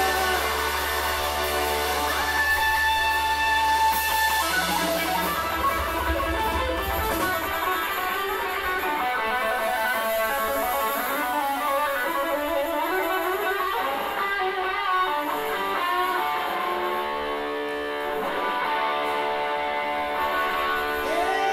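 Live soul band playing an instrumental passage with an electric guitar out front, picking a busy run of notes over the band; no voices are heard.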